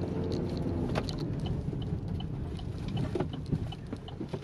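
Steady road and engine rumble inside a moving car's cabin. From about halfway through, a turn-signal indicator ticks at about three clicks a second.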